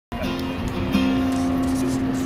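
Acoustic guitar music with held notes, a new note sounding about a second in.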